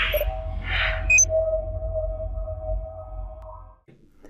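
Electronic logo sting: a swish and a sharp ping about a second in, then a held synthetic tone over a deep rumble that fades out just before the end.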